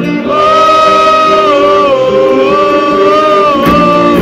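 Live rock band playing, with a long held sung note carried over acoustic guitar and keyboard chords, recorded loud by an audience phone.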